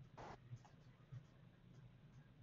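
Near silence: faint room tone with a hum, one brief soft noise about a quarter second in, and a few faint ticks.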